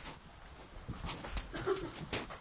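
A brief, faint whimper amid scattered knocks and camera-handling noise.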